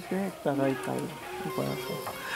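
A man's voice in a few short, quiet phrases, with music.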